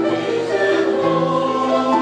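Mixed choir of men's and women's voices singing a carol in parts, holding sustained chords that move to a new chord every second or so.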